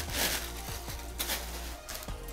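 A cardboard subscription box being opened and its packed contents handled, giving a couple of short rustles, over soft background music.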